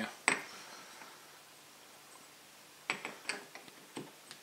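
Metal end plate of a large Sanyo stepper motor being set back onto the motor body over the rotor shaft. A sharp metallic click comes about a quarter second in, then a quick cluster of lighter clicks and taps about three seconds in as it is seated.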